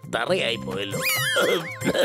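A line of cartoon dialogue, then a high-pitched wavering sound effect that warbles up and down about three times, over background music.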